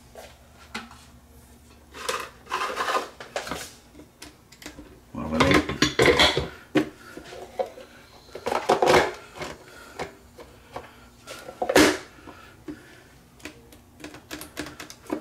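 Plastic-and-steel drip coffee maker being handled: its hinged plastic top lid lifted and shut, with several short clattering, rattling bursts and one sharp clack near the end.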